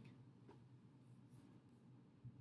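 Near silence: room tone with a faint steady low hum and a faint soft tick about half a second in.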